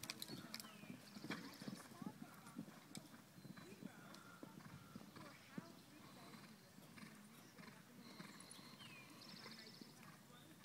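Faint, distant hoofbeats of a horse cantering on arena sand, heard as scattered light thuds and clicks.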